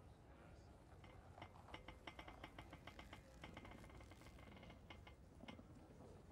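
Faint, quick clicking of computer keyboard keys, several clicks a second, starting about a second and a half in and dying away near the end.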